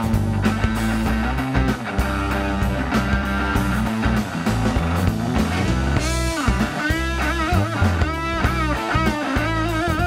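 A live blues trio plays an instrumental passage: electric guitar lead over bass guitar and a steady drum beat. About six seconds in, the guitar moves into bent, wavering high notes with vibrato.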